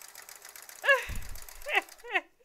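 Sewing machine stitching at speed during free-motion quilting, a fast even needle rhythm that stops near the end. A short falling vocal sound like a sigh or laugh comes about a second in, with a low bump, and another just before the end.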